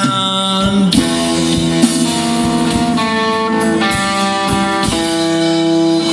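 Live blues band playing: electric guitar and bass guitar over a drum kit keeping a steady beat, with a singer.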